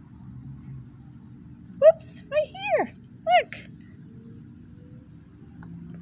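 A continuous high-pitched insect trill, with a few short high-pitched sounds from a woman's voice about two to three and a half seconds in.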